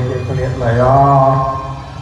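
A Buddhist monk chanting a blessing through a microphone, drawing out one long, slightly wavering note in the middle, then fading near the end.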